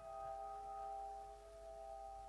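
Soft piano notes left ringing on the sustain pedal after the keys are released, slowly dying away, with no new note struck. They are the tail of a slow, quiet phrase built on the five-note set A-flat, G, E, E-flat, C.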